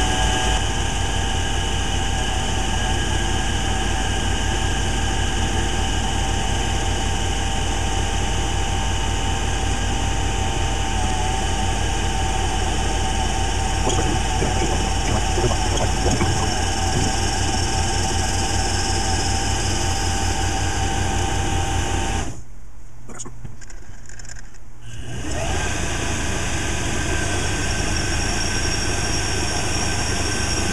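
Metal lathe running under power, taking a facing cut across the end of four-inch aluminium round stock with an insert-tipped tool: a steady hum of motor and gearing with several held tones. The sound drops off for a couple of seconds about three-quarters of the way through, then resumes.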